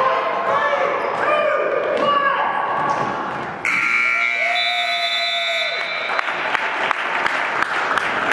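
Gymnasium scoreboard horn sounding the end of the game: one steady electric buzz of about two and a half seconds, starting a few seconds in. Shouting voices come before it, and short knocks follow it.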